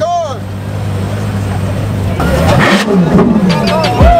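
Ferrari LaFerrari's V12 engine idling steadily, then revved, its pitch rising and falling, a little over halfway through.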